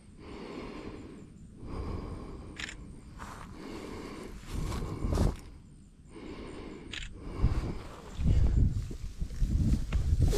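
Rustling and handling noise in dry grass, with two short sharp clicks about two and a half and seven seconds in, from a phone camera's shutter as the fish is photographed.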